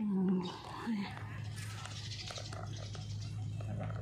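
A short pitched vocal sound at the start, then a steady low hum that sets in about a second in.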